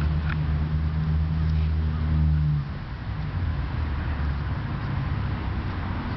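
Low, steady hum of a motor vehicle's engine running close by, louder for the first two and a half seconds and then falling away, with faint scratching of hands digging in mulched soil.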